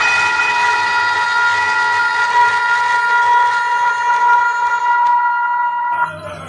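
One long horn-like note, loud and steady in pitch, held without a break.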